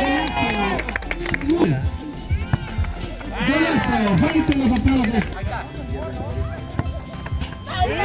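Several people's voices shouting and calling out in bursts, with music playing underneath.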